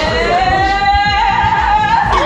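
A long drawn-out "heyyy" sung out on one held note, over background music with a steady beat.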